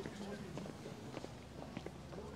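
Footsteps on a stone-paved path, uneven short clicks, with people talking indistinctly in the background.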